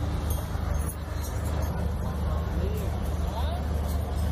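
A steady low machine hum, like a running engine or generator, with faint voices of people talking in the background.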